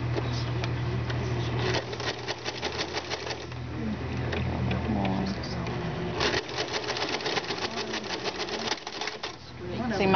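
Domestic sewing machine stitching with a ruffler foot attached, the foot clicking rapidly as it pushes pleats into the fabric. The motor hum drops away about six seconds in, while the clicking runs on and stops shortly before the end.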